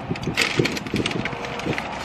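Close eating and food-handling noises: a string of irregular crackly clicks and rustles with no steady rhythm.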